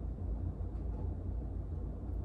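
Steady low rumble of room background noise, with no other distinct sound.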